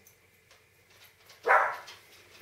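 A dog barks once, a single loud bark about one and a half seconds in, alerting to a delivery arriving.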